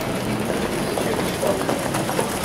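A field of Orlov trotters pulling sulkies at speed on a dirt track: a steady, noisy rumble of hooves and wheels, with crowd voices in the background.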